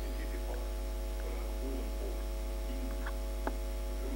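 Steady electrical mains hum with a buzzy stack of overtones, and a single sharp click about three and a half seconds in.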